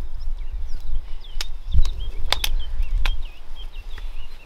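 Wind rumbling on the microphone, with small birds chirping faintly throughout and a handful of sharp clicks, two of them close together in the middle.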